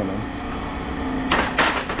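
Lengths of aluminium extrusion clanking as they are handled, with a quick cluster of knocks a little past the middle, over a steady low hum.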